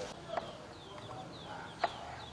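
Birds chirping, with several short falling chirps, and two sharp clicks, the louder one near the end.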